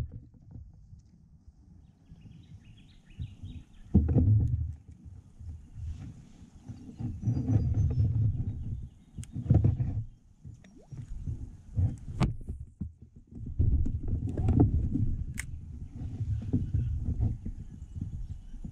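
Low knocking and rumbling from rod and tackle being handled on a kayak, in uneven patches, with a few sharp clicks.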